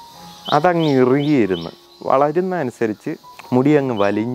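A man's voice, in long held and wavering phrases that may be speech or singing, with a pause in the middle.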